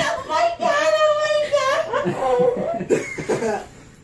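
High-pitched wordless crying: long wavering wails that break into a few short sobs about three seconds in.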